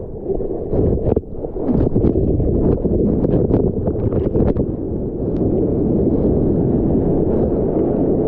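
Ocean whitewater rushing and splashing over a waterproof action camera's microphone as a bodyboard rides through a breaking wave. The sound is loud and muffled, with many sharp splash hits through the first half and then a steadier rush.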